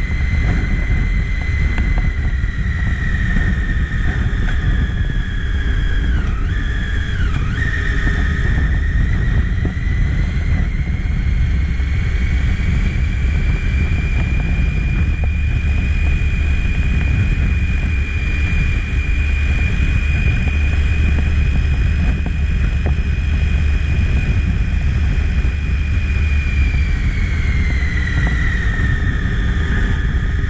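Triumph motorcycle engine running at a steady low road speed, its whine dipping briefly twice about seven seconds in and falling away as the bike slows near the end, under heavy wind rumble on the microphone.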